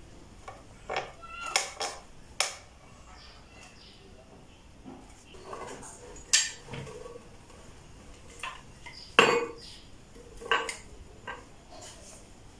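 Wooden parts of a pinewood tensegrity table knocking and clinking against each other as they are handled: a series of sharp, irregular clacks, the loudest about nine seconds in.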